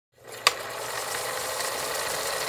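Old film projector sound effect: a steady mechanical whir and hiss, beginning with a sharp click about half a second in.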